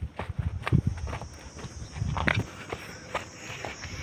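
Footsteps on stony, rubbly ground and dry grass: irregular crunching steps with low thuds, several a second, with a louder crunch about two seconds in.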